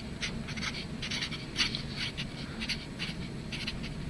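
Felt-tip marker writing on paper: a quick run of short, scratchy strokes as letters are written out.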